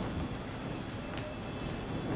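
Steady low room hum in a lecture room, with a single faint click a little after a second in.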